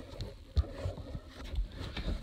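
Handling noise from a phone camera being swung around: a low rumble and a few dull, irregular bumps.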